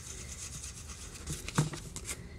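A fingertip rubbing quickly back and forth on a paper tag, scuffing off part of the thin glued-on paper napkin: a soft scratchy rasping, with one short thump about one and a half seconds in.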